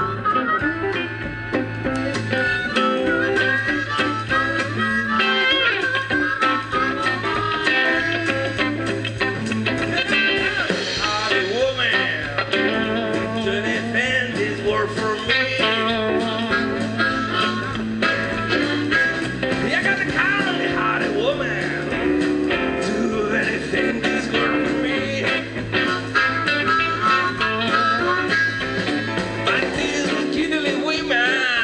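A blues-rock band playing live: electric guitars, bass guitar and drums, with a harmonica cupped against the vocal microphone playing bending lead lines over a steady, repeating bass riff.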